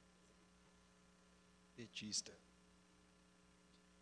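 Near silence filled by a steady electrical mains hum on the sound system, with one brief soft sound lasting about half a second, about two seconds in.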